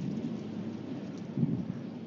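Wind buffeting the outdoor camera microphone: a steady low rumble with two stronger gusts, one at the start and one about a second and a half in.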